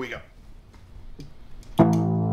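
An electric guitar chord comes in loud and rings on near the end, the opening A major chord of a looped progression. Before it there is a quiet stretch with a few faint clicks.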